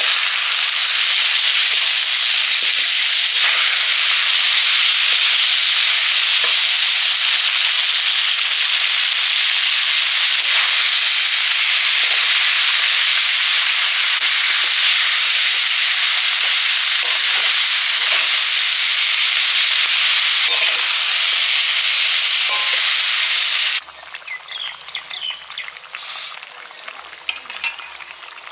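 Fried snakehead fish, spices and then chikni shak greens sizzling hard in hot oil in a karahi, stirred with a spatula. The sizzle stops abruptly about four seconds before the end, leaving a much quieter background with faint short chirps.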